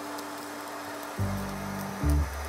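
Hand-held gas torch flame hissing steadily as it sears a hanging rack of beef ribs, under background music; a low music note comes in just past halfway.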